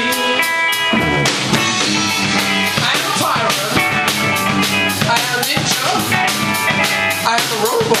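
Live rock band playing: a drum kit keeping a steady beat under electric guitars.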